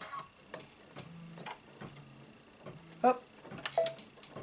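Light taps and soft rustling of hands placing and smoothing fabric on a hooped embroidery stabilizer, with the machine stopped.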